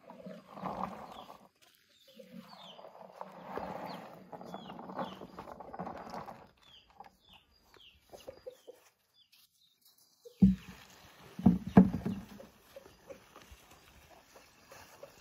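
Shea nuts rattling as they are tipped out of a plastic bucket onto bare ground, in two pourings, with birds chirping over it. Later come two or three loud thumps, the loudest sounds here, as the emptied bucket is set down.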